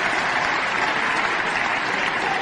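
Church congregation applauding steadily, a dense even clapping with no voice over it.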